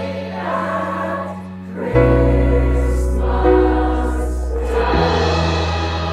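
Eighth-grade school chorus singing a slow passage in long held notes, accompanied by piano and bass; the bass note changes about two seconds in and again near five seconds.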